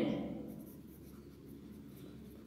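A pen writing on a textbook page: a faint scratching of the tip on paper.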